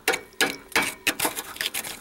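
Screwdriver tip scraping and prying at rust scale on a corroded cast-iron boiler heat exchanger section, a rapid irregular run of clicks and scrapes as flakes of rust pop off. The flaking scale is the mark of oxygen corrosion eating into the cast iron.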